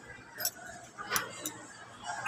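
Shop ambience: indistinct background voices with a few short, light metallic clinks, about half a second in and again just after a second.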